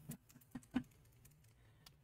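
A few short, faint clicks and taps from a pair of 3D-printed resin scissors being snipped shut and handled.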